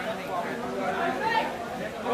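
Several people talking over one another in a close group: crowd chatter.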